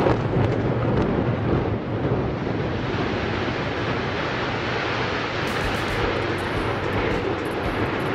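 A high-rise building collapsing in a demolition: a heavy, dense rumble that starts suddenly, keeps up without a break and cuts off abruptly.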